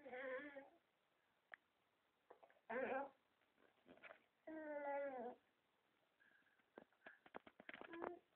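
An eight-month-old baby fussing in three drawn-out, whining calls, the last two about a second apart and each about a second long. A run of short clicks follows near the end.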